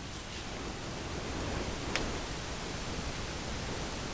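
Steady background hiss with a single faint click about two seconds in.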